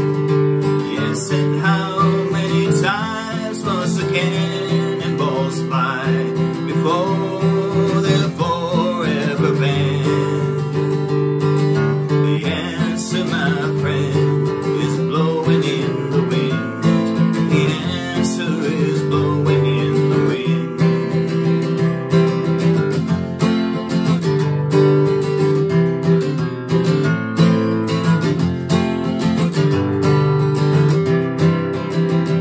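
Steel-string acoustic guitar strummed in a steady folk rhythm, with a man singing over it for much of the time.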